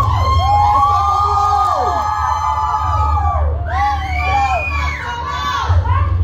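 A group of children cheering and shouting together in long, drawn-out whoops, many high voices overlapping, over a steady low hum.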